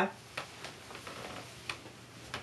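A few faint, irregular clicks and taps over quiet room noise with a low hum, as a man shifts and rises out of an upholstered armchair.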